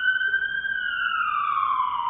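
A siren sound effect: one wailing tone that holds high, then slowly falls in pitch and fades.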